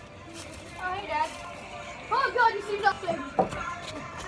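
Boys' voices over music playing in the background, with one brief knock about three and a half seconds in.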